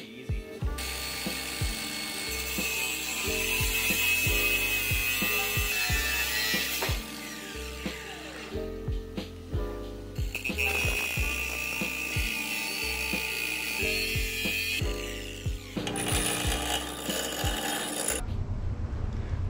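Angle grinder cutting through stainless steel rod, in two long cuts of several seconds each with a steady high whine. Background music with a bass line runs underneath.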